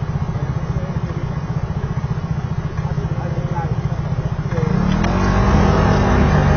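Motor scooter engine idling with a fast, even low pulsing, then revving up and rising in pitch near the end as it pulls away from the light.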